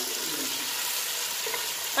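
Fish pieces in a spiced masala sizzling steadily in a pot while being stirred with a spatula.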